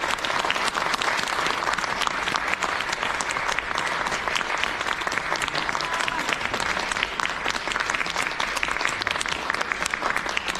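Theatre audience applauding steadily, many hands clapping at once at the end of a dance performance.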